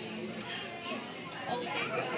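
Background chatter of several voices in a restaurant dining room, with a louder, higher-pitched voice about a second and a half in.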